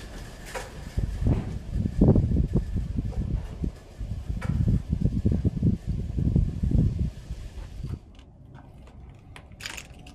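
Footsteps crunching over fallen plaster and rubble on a debris-strewn floor: a run of irregular heavy steps with occasional sharp cracks. They stop near the end.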